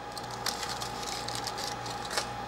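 Aluminum foil tape being peeled off a circuit board and crumpled, giving faint, scattered crinkling and crackling over a steady low hum.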